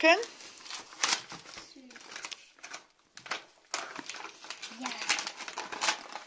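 Shiny plastic gift wrap crinkling and rustling as it is pulled open by hand, in irregular crackly rustles.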